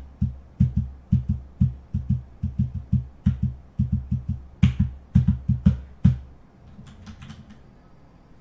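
Typing on a computer keyboard: a quick, uneven run of keystrokes that stops about six seconds in.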